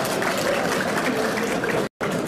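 Large audience laughing and murmuring in a lecture hall, a dense steady wash of many voices that breaks off for an instant near the end.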